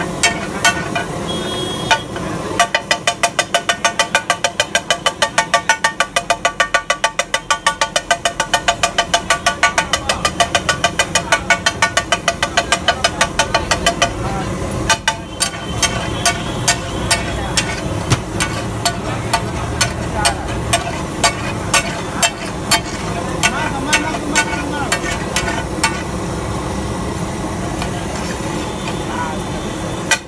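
Metal spatula and masher clattering against a large flat iron griddle (tawa) as pav bhaji is mashed and stirred: a fast, even tapping about four times a second with a ringing metallic note, then slower strikes about once a second.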